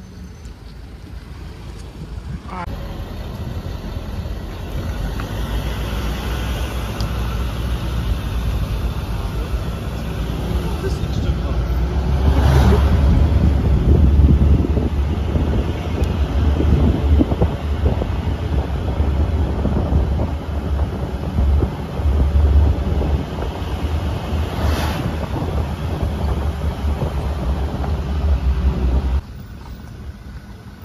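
Road noise of a moving car, heard from the vehicle: a steady low rumble with wind buffeting the microphone. It starts abruptly a couple of seconds in and cuts off suddenly near the end.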